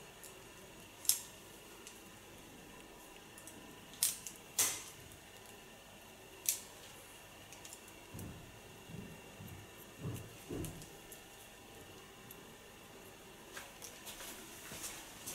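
Hair-cutting scissors closing on wet hair in a few sharp snips, one about a second in, two close together about four seconds in and one more at six and a half seconds, over quiet room tone. A few soft low thumps follow later on.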